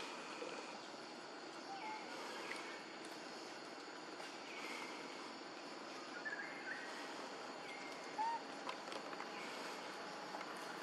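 Outdoor ambience: a steady hiss with scattered short, high chirping calls every second or two. A brief arched call about eight seconds in is the loudest.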